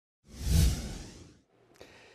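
A whoosh transition sound effect with a deep low boom, swelling up about a quarter second in and fading away over the next second.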